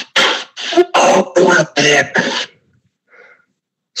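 A quick run of six or seven short voice sounds, about two a second, stopping about two and a half seconds in, with one faint sound just after three seconds.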